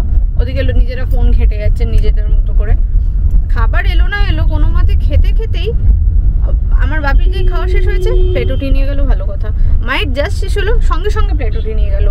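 A woman talking over the steady low rumble of a car cabin on the move.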